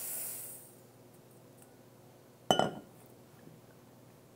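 Granulated sugar pouring into a pot with a soft hiss that fades out within the first second. About two and a half seconds in, a single sharp, ringing clink.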